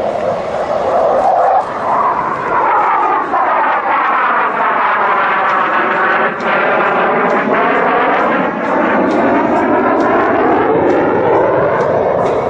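CF-188 Hornet's twin General Electric F404 turbofans, loud and continuous as the jet flies past, with a sweeping, phasing sound that drops in pitch toward the middle as it passes closest and rises again after.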